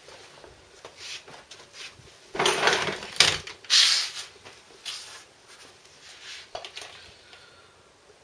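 Handling noises of someone settling in to work on a workshop floor: rustling and scraping with a few sharp knocks, loudest in a cluster about two to four seconds in, then scattered small clicks.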